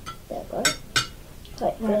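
Two sharp clinks of a metal table knife against a ceramic plate, about a third of a second apart.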